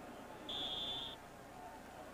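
A single short, steady high-pitched tone that starts about half a second in and lasts under a second.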